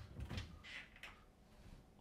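Wooden wardrobe door being moved by hand: a few soft knocks and rubbing sounds in the first second, then fainter handling.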